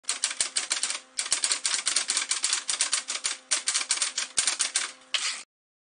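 Typewriter keys striking in quick runs, with two brief pauses, ending in a short smoother burst and stopping about five and a half seconds in.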